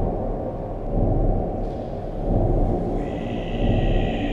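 Dark ambient drone music: a dense, low rumbling wash that swells and ebbs slowly, joined by a higher sustained tone about three seconds in.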